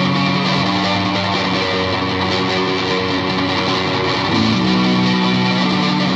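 Instrumental passage of a rock song, with no vocals: electric guitar chords held and ringing, shifting to a new chord about four and a half seconds in.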